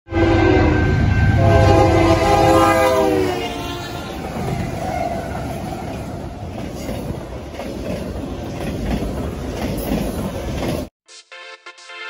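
Union Pacific freight locomotive's air horn sounding one long chord of several notes that drops in pitch as the locomotives pass, followed by the rumble and rattle of the train's cars going by. The train sound cuts off suddenly a second before the end, giving way to electronic music.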